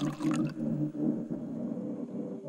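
Quiet ambient music: sustained low synth tones that swell and fade, with no vocals and no beat.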